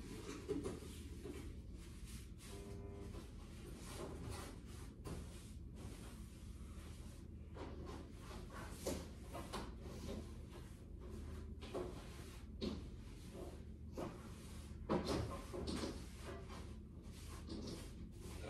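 Irregular soft knocks and clicks, a couple every second or so, over a steady low hum. The knocks are loudest about fifteen seconds in.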